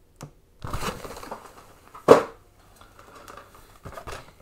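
Action-figure boxes with plastic blister windows being handled and swapped, the plastic crinkling and rustling, with one sharp, loud crackle about two seconds in.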